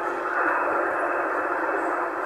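CB transceiver receiving in upper sideband on 27.305 MHz: a steady, narrow-sounding hiss of static from its speaker, with no station coming through.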